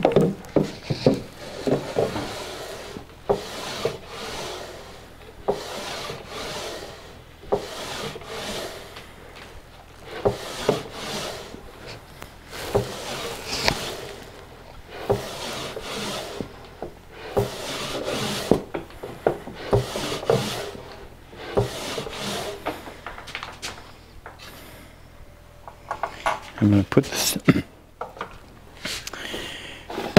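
A tight-fitting wooden drawer slid in and out of its cabinet opening again and again, wood rubbing on wood in repeated strokes. The drawer is still a bit snug.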